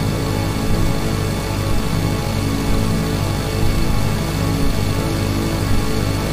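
Slow instrumental worship music: sustained held chords over a steady low bass, without singing.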